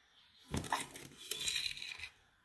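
Granulated sugar poured from a spoon into a clear plastic tray on a kitchen scale: a grainy, rustling pour of crystals starting about half a second in.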